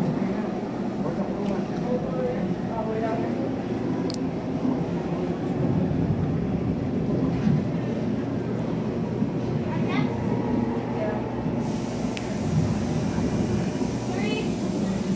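Indistinct voices and chatter over a steady low rumble of a busy indoor room, with a couple of brief sharp clicks.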